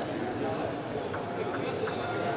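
Table tennis ball clicking off the bats and the table in a rally, several quick sharp ticks in the second half, over a murmur of voices in a large hall.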